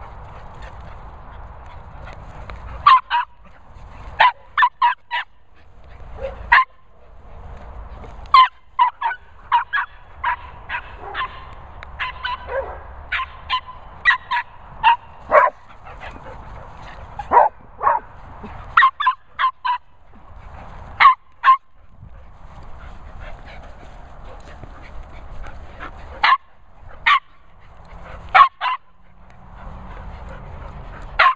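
Border Terrier barking over and over in short, sharp barks that come in quick runs of two to four, with brief gaps between the runs.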